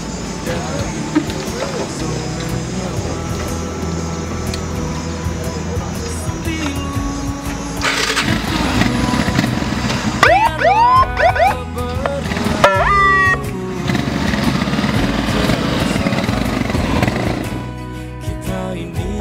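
Police motorcycle engines running steadily, with a burst of short rising siren whoops from the motorcycles about ten seconds in, under background music.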